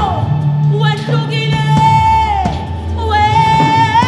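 A woman singing a worship song into a microphone, holding long high notes, over a low sustained backing.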